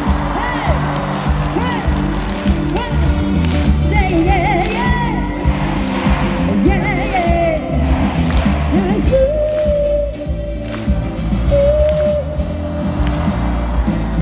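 Live concert performance: a woman singing a pop ballad into a microphone over a full band, with melodic runs early on and long held notes about two-thirds of the way through, heard through the PA from the audience.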